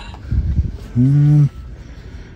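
A man's short wordless hum, held for about half a second around the middle, after a couple of low thumps of handling noise.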